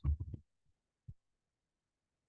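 A man's voice trails off at the start, then near silence broken once by a brief low thump about a second in.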